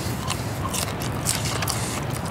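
A person chewing a mouthful of McDonald's fries: a run of short, irregular crunches over a steady low background hum.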